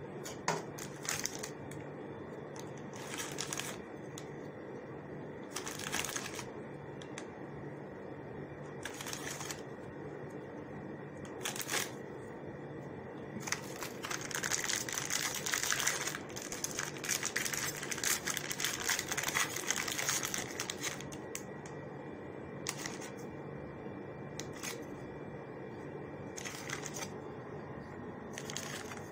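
Plastic biscuit packaging crinkling in short bursts, with a longer spell of rustling around the middle, as biscuits are taken out and laid in a dish. A faint steady hum runs underneath.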